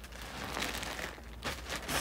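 Plastic poly mailer parcels crinkling and rustling as they are handled, in a few uneven rustles.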